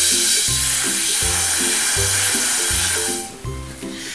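A long, steady breath blown hard through a drinking straw into a paper-cone ball-float toy, a loud hiss lasting about three seconds before it stops. Background music with a steady beat plays underneath.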